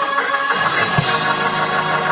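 Church band music: held keyboard chords with a single low drum hit about a second in.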